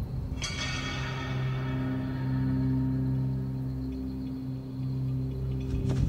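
Dramatic background score: a low sustained drone with a bright metallic chime or shimmer struck about half a second in, ringing and slowly dying away.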